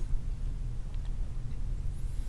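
Low steady hum with a faint hiss: background room noise.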